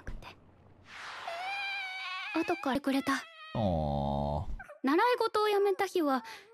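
Anime soundtrack: a drawn-out, high-pitched whining cry from a character, a few short spoken words, then a low tone that falls in pitch, followed by more dialogue near the end.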